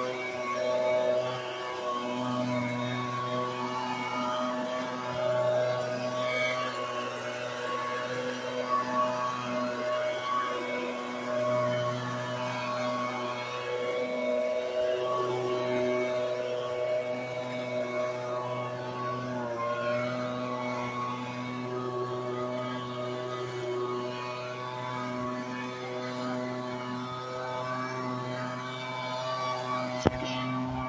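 Handheld gas leaf blower running steadily at a constant throttle with a rushing of air, blowing grass clippings off the walkway; its engine note wavers slightly a few times.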